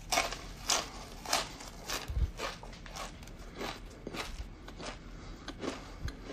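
A person chewing food close to the microphone, ASMR-style: a run of short wet mouth clicks and smacks, roughly two a second, as he eats a small hot snack.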